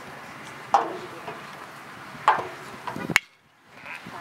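Two sharp smacks of a baseball into a leather glove, about a second and a half apart. Near the end, a sharp click and a short cutout of all sound.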